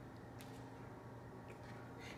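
Quiet room tone with a steady low hum and one faint click about half a second in.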